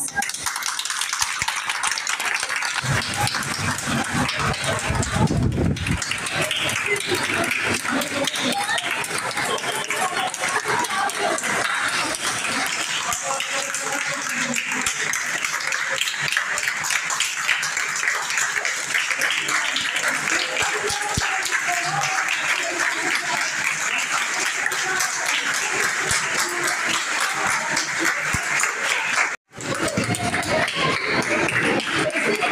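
A crowd of people clapping their hands continuously as they walk, with voices mixed in. A low rumble about three to six seconds in, and a brief cut in the sound just before the end.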